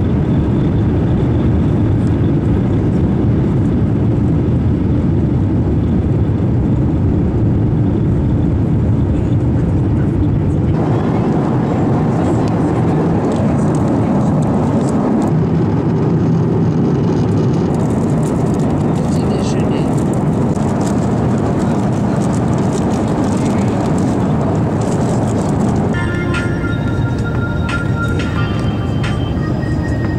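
Jet airliner cabin noise from a window seat: the engines' loud, steady rush during the take-off roll and in flight. The sound changes abruptly a few times where separate clips are joined.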